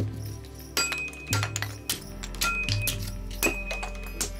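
Hatchet blows chopping into a wooden log, about five sharp strikes, some with a short metallic ring, over background music with a slow low beat.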